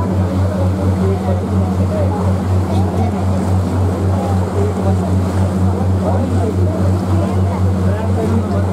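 A small passenger motorboat's engine running steadily underway, a loud low drone with an even throb, with people talking in the background.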